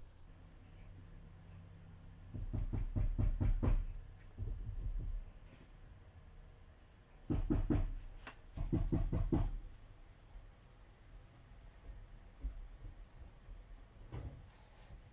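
Two bursts of quick light tapping, several taps a second, from a makeup brush and hand-held eyeshadow palette being knocked and handled.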